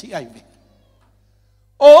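A man's voice preaching: a phrase trails off, about a second of silence follows, then loud speech resumes near the end.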